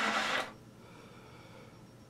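Trumpet's held note ending about half a second in, fading out in a short breathy tail into faint room tone.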